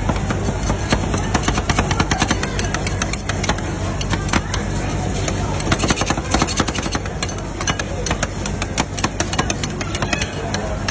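Metal spatula blades chopping rapidly against a steel ice-cream cold plate, a fast, irregular clatter of sharp clicks, over a steady low hum.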